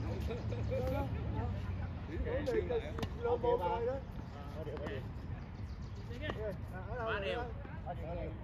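Tennis rally: a ball struck by rackets, a few sharp pops spread through the rally, with people's voices talking over it and a steady low rumble underneath.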